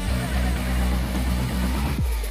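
Background music with guitar over a strong, steady bass line.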